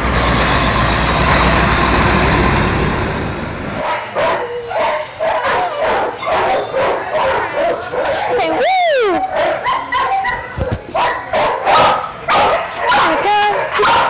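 A large box truck's engine and road noise, steady for the first few seconds, then many dogs barking in shelter kennels, with a single high yelp that rises and falls about nine seconds in.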